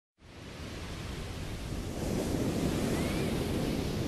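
Ocean surf: a steady rushing wash of waves that fades in over the first two seconds and then holds.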